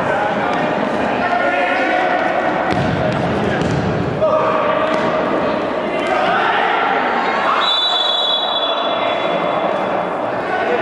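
Futsal match in a large echoing gym hall: players shouting, the ball knocking on the hard floor with a sharp thud about four seconds in. Near the end comes a long, steady high whistle.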